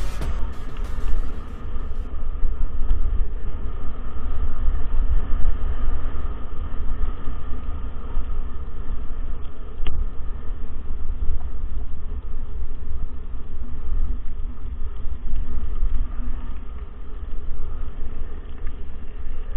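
Wind buffeting the microphone of a camera carried on a mountain bike riding a dirt track: a gusty low rumble with ride noise underneath, and one short click about halfway through.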